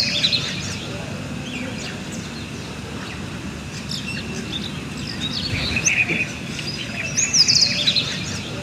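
Several birds chirping and calling over a steady low background noise, with a quick run of high chirps at the start and again near the end.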